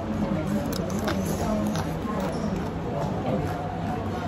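Background chatter of diners' voices in a restaurant, with a few faint clicks about a second in.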